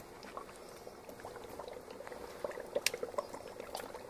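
Dry ice bubbling in water and bubble bath, a soft fizzing hiss with many small crackling pops as the foam's bubbles form and burst; the popping grows busier in the second half.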